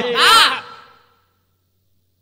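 A man's voice ends a phrase with one drawn-out syllable, its pitch rising then falling, fading out within about a second; then complete silence.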